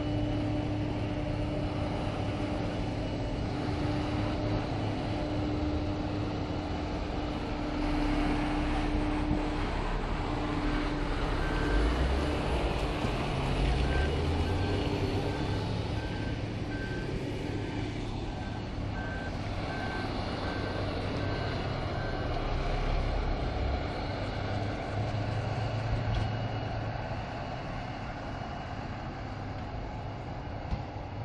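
Tractor diesel engine running under load while hauling a loaded silage trailer of chopped maize, a steady low rumble throughout. A short high electronic beep repeats a little over once a second for several seconds in the middle.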